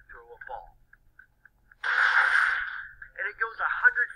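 A man speaking in short phrases, broken about two seconds in by a burst of noise that lasts about a second and fades out.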